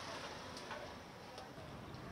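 Faint background noise with a few scattered sharp clicks.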